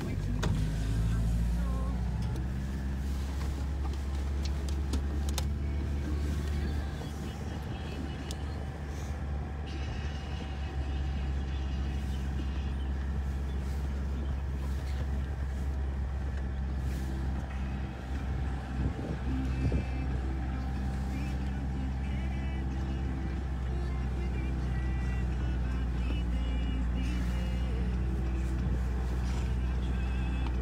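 A jeep's engine running steadily as it drives, heard from inside the cabin as a constant low rumble.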